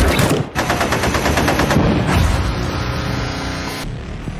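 Mounted machine gun firing a long burst of rapid, evenly spaced automatic fire that cuts off suddenly near the end.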